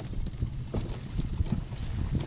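Wind buffeting the microphone on open water: an uneven low rumble that rises and falls in gusts, over a faint steady high hiss.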